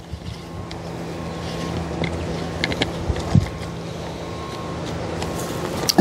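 Steady low mechanical hum, like a distant motor, with some wind noise and a few faint light clicks about halfway through.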